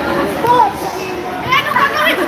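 Volleyball players' voices calling out and chattering over one another, with a burst of high, excited calls about a second and a half in.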